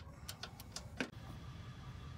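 A ratchet wrench tightening the coilover's top-mount bolts: a handful of sharp clicks at uneven spacing.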